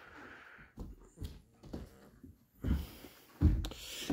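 A few soft knocks and thumps as a person steps through a boat's walk-through windshield onto the carpeted cockpit floor, the loudest near the end.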